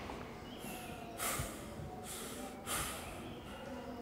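A man breathing heavily, with loud, rasping breaths about a second in and again near the three-second mark and fainter ones between.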